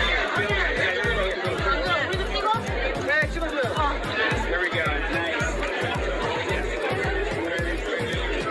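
Many people talking and chattering at once over music with a steady low beat, about two beats a second.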